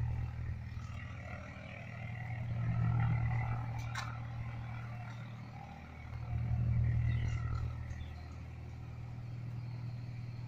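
Low machine hum that swells and fades three times, with a sharp click about four seconds in.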